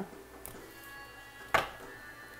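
Soft background music, with one sharp tap about one and a half seconds in as a stack of tarot cards is set down on the table.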